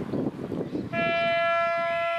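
A football ground's siren sounding one long, steady tone, starting about a second in. It signals the start of play for the quarter.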